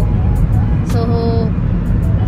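Road and engine noise inside a moving car's cabin, a steady low rumble.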